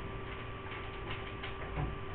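Quiet room with a steady faint electrical hum and soft, irregular light clicks a few times a second.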